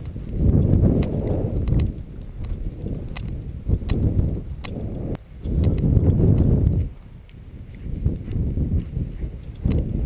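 Wind buffeting the microphone in four gusts, a deep rumble, with scattered light clicks of footsteps and rustling through tall dry grass.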